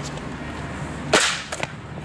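Skateboard striking brick pavement: one loud, sharp crack a little past halfway through, then a lighter knock about half a second later, as a flatground trick is popped and landed.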